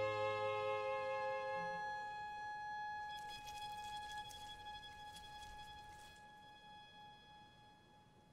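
Background music: a held chord of long sustained notes, fading out gradually, with a faint high shimmer in the middle.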